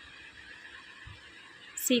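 Quiet room tone, a faint steady hiss, until a woman's voice starts speaking near the end.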